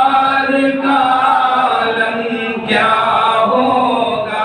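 A man chanting an Urdu naat without instruments, holding long, drawn-out notes that bend from one pitch to the next.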